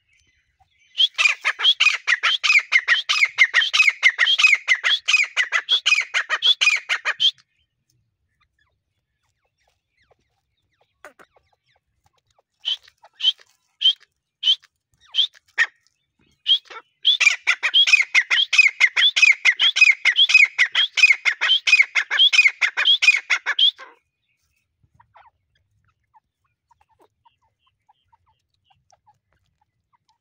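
Grey francolin (teetar) calling: two long bouts of rapid, repeated sharp notes, each lasting about six seconds, with a few separate single notes in the gap between them.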